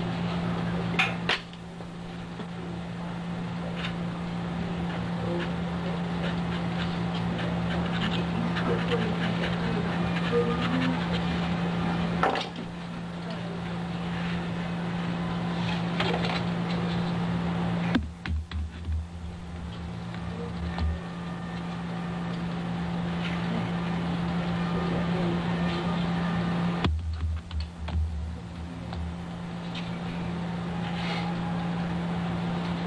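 Steady low electrical hum over hiss, typical of an old analogue videotape recording, with scattered faint clicks and scratches. The hum breaks off about 18 and 27 seconds in, giving way each time to a couple of seconds of low fluttering rumble.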